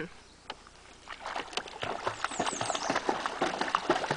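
A Schnauzer in a life vest is dipped into river water and paddles, splashing the surface in quick, irregular splashes. The splashing starts about a second in, after a short hush.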